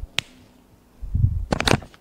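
Whiteboard markers and their plastic caps being handled: one sharp click, then a low bump and a quick cluster of clicks about a second and a half in, as caps are pulled off and snapped on.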